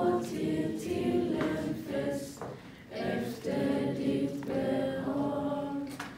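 A group of young people singing together unaccompanied, a sung grace before dinner, in phrases with a brief pause about halfway through.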